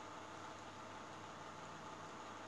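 Faint steady hiss with a low hum: room tone while the speaker is silent.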